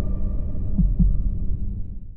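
A low, steady droning hum with a heartbeat-like double thump a little under a second in. It fades out right at the end.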